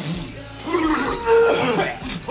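Men gasping and letting out pained, drawn-out groans of 'ah' in the second half, their mouths burning from hot peppers they have just eaten on a dare.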